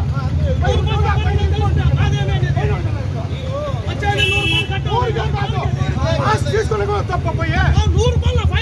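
Several men talking over one another outdoors over a steady low engine rumble. A vehicle horn gives one short toot about four seconds in.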